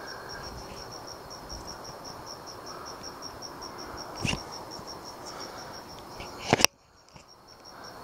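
A cricket chirping steadily, about five high-pitched chirps a second. A brief knock comes about four seconds in, and a sharp click near the end, after which the sound drops out for a moment.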